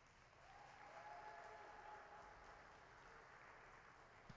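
Faint applause from a small audience, swelling about a second in and then thinning out as the skater's program music ends.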